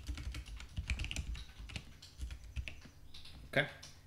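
Typing on a computer keyboard: a run of quick, irregular key clicks that stops about three seconds in.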